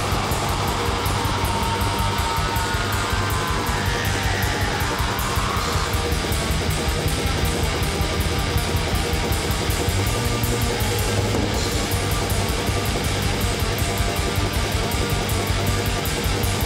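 Raw black metal: heavily distorted electric guitars in a dense, noisy wall of sound over fast, steady drumming.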